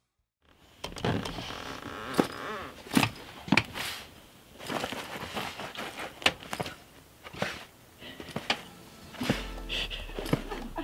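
Irregular knocks and clatters over rustling, starting about half a second in, with a brief wavering whine about a second and a half in.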